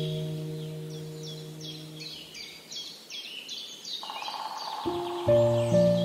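A songbird singing a run of quick, repeated down-slurred chirps, about three a second, over soft background music with held chords that fade out in the first two seconds and come back about five seconds in.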